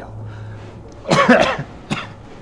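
A man coughing: one rough cough lasting about half a second, starting halfway through, followed by a short sharp one near the end.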